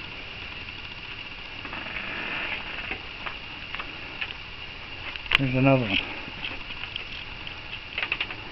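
A steady, high-pitched chorus of night insects, with soft irregular clicks and taps from raccoons eating and moving about on a wooden deck, and one sharp click about five seconds in.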